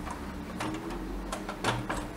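A plastic Bruder Land Rover toy car being handled and turned by hand, giving scattered light clicks and knocks.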